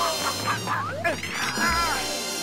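Cartoon sound effects of roosters squawking, several short rising-and-falling calls, over background music, with a low thud near the end.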